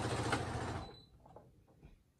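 Brother computerized sewing machine running steadily as it stitches, then stopping suddenly less than a second in, followed by a few faint clicks. The thread has knotted up in the stitching.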